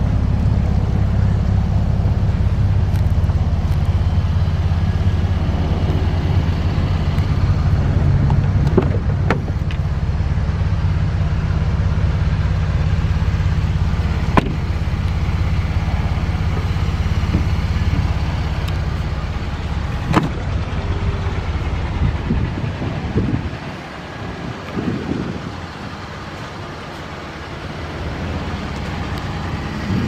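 Ford F-150's 3.5-liter EcoBoost twin-turbo V6 idling with a steady low hum that drops noticeably quieter about two-thirds of the way through. A few sharp clicks or knocks come over it.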